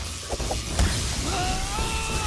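Animated-show soundtrack: an electric shock crackles with a few knocks and a thud. Then, about a second and a half in, a man lets out a long pained scream.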